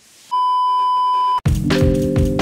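A steady electronic beep lasting about a second, one pure tone that cuts off sharply. Music with a drum beat starts right after.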